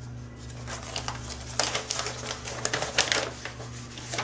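Paper instruction sheet rustling and crinkling as it is handled and unfolded, a run of irregular crackles and clicks.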